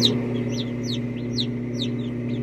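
Newly hatched chicks peeping inside an egg incubator: a string of short, high, downward-falling peeps, about seven in two seconds, over the steady low hum of the incubator.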